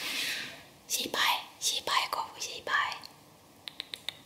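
A woman whispering a few breathy, hushed words, followed by a few small sharp clicks near the end.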